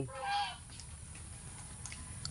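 A crow gives one short, harsh caw just after the start, then only faint background remains.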